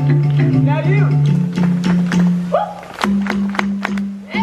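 Drum-show music: a sustained low drone that steps up in pitch about halfway through, with voices whooping over it and sharp drum strikes through the second half.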